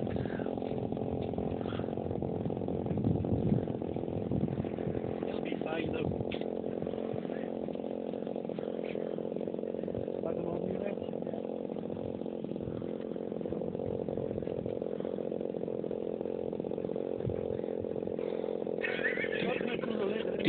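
Petrol engine of a large radio-controlled Extra model aerobatic plane running steadily at low throttle during a taxi test on grass.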